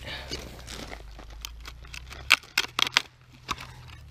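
Dry, rotten stump wood being broken and torn apart by hand: a quick run of sharp cracks and snaps, the loudest a little past halfway.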